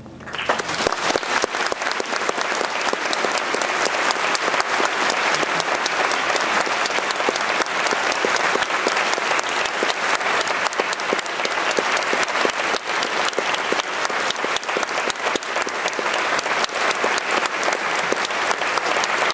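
Audience applauding: dense, steady clapping from a full hall that starts right as the music stops and keeps an even level throughout.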